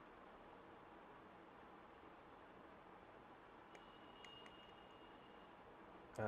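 Near silence, with a few faint clicks of a digital alarm clock's small plastic setting buttons being pressed a little past the middle, alongside a faint high tone.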